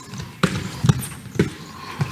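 A handball thudding three times, about half a second apart, as it is bounced and handled in a passing drill.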